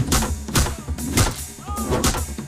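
Action film background score with a driving beat: heavy percussion hits about twice a second over deep bass.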